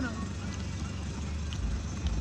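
Car moving slowly on a snowy road, heard from inside the cabin: a steady low rumble of engine and tyres.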